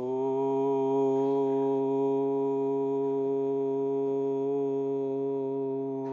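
A man's voice chanting one long, steady 'Om' on a single held pitch, which slides up into the note at the start and stops about six seconds in.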